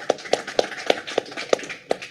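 Audience applause in a small hall, a dense patter of clapping with a louder, sharper knock about three times a second. It thins out near the end.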